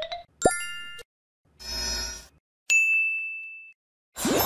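Edited-in cartoon sound effects: a rising run of tones ends, then a quick upward pop with a short chime, a brief whoosh, and a single high bell-like ding that fades over about a second.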